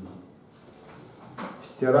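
A pause between a man's sentences, mostly quiet. About one and a half seconds in there is a single short click, then a brief breath-like hiss, and his voice starts again near the end.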